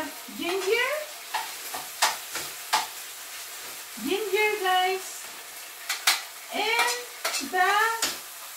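Beef frying and sizzling in a pan on the stove as it is stirred, with a few sharp clinks of the utensil against the pan. A woman's voice cuts in several times in short snatches.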